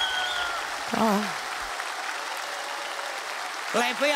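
Studio audience applauding after a sung performance, with one short call from a voice about a second in.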